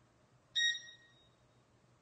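A single high chime about half a second in, starting sharply and ringing away within about a second.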